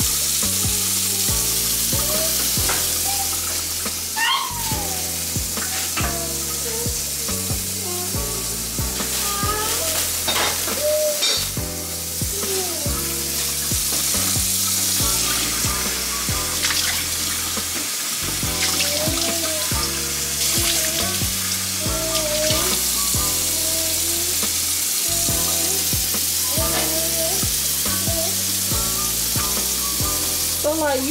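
Kitchen tap running in a steady stream into a stainless-steel sink, splashing into a hollowed-out bell pepper as it is rinsed, over background music with a bassline and a sung melody.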